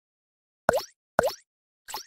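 Cartoon 'plop' sound effects in an animated intro: two short pops about half a second apart, each with a quick downward-then-upward swoop in pitch, and a third starting near the end.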